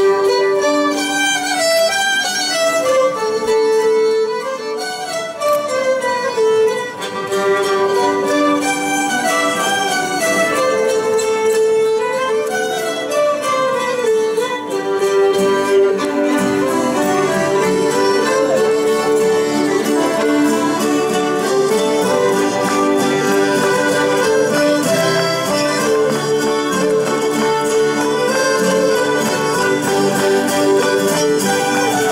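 Latvian folk ensemble playing an instrumental folk tune, fiddles carrying the melody over strummed guitars and mandolins. The accompaniment grows fuller about halfway through.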